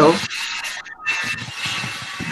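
Loud scratchy rubbing noise coming through a video-call participant's microphone, with a brief break about a second in.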